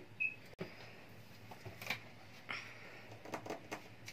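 Faint, scattered light taps and rustles of hands working sunflower oil into flour in a bowl for samosa pastry dough.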